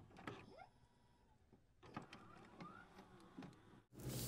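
Near silence, with a few faint clicks and short rising chirps.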